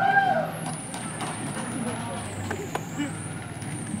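Street background noise: a low steady rumble with a thin, high whine that wavers and dips in pitch partway through, and a few faint clicks.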